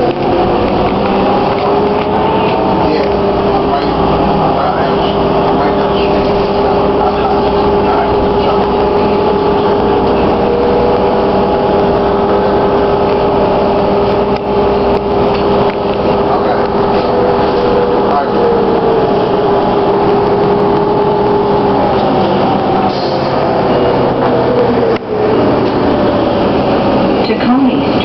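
Ride inside a 2009 New Flyer DE41LF diesel-electric hybrid bus: the Allison EP hybrid drive's whine rises as the bus pulls away over the first few seconds, holds at one pitch while it cruises, then falls away near the end as it slows, over the steady rumble of the engine and road.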